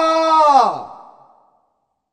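A man's reading voice drawing out the last vowel of a phrase; it falls in pitch and trails off breathily, dying away about a second in.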